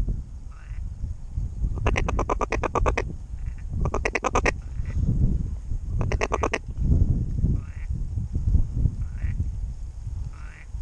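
A duck call blown in three bursts of rapid, evenly spaced quacks, about two, four and six seconds in, calling to an incoming flock of ducks. Faint short calls sound between the bursts, with a low rumble underneath.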